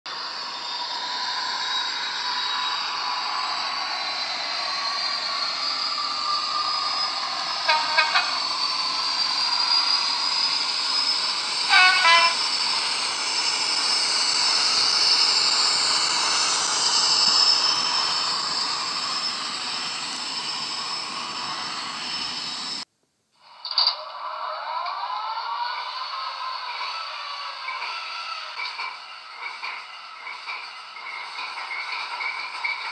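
Hornby HM7000 DCC sound decoder playing a Class 56 diesel locomotive sound through a model's small speaker, with no deep bass: the engine runs on with its pitch slowly rising, and two short horn blasts sound about eight and twelve seconds in. The sound cuts off suddenly a little after twenty seconds, then comes back quieter with a click.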